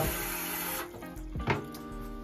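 Bathroom tap water running as soap is rinsed off the sides of a shaving soap container, stopping abruptly about a second in, followed by a single click. Soft background music plays throughout.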